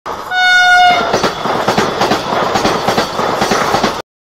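Local electric train giving one short, steady horn blast near the start, then its wheels clattering rapidly and regularly over the rail joints as it runs past.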